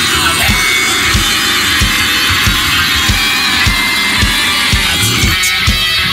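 Death metal band playing: heavily distorted guitars over a steady run of kick drum hits. About five seconds in, the low guitar layer drops back.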